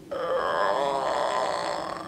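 A young woman's long, wavering groan of exhausted frustration, lasting nearly two seconds.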